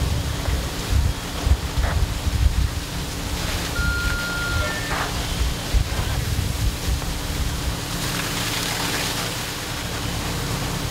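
Fire-ground noise: a steady rushing roar with wind buffeting the microphone, under a steady low hum, and a brief high beep about four seconds in.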